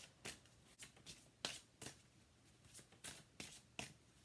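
A deck of angel oracle cards being shuffled by hand: faint, quick slaps and riffles of card on card, about three a second at an uneven pace.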